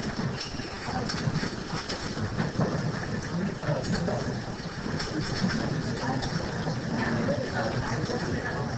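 Indistinct hubbub of a classroom full of students talking at once over a steady rustling noise, with no single clear voice.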